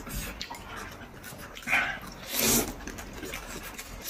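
A man slurping beef noodle soup from a bowl held to his mouth. There are two louder slurps, at about one and a half and two and a half seconds in, with softer eating noises between them.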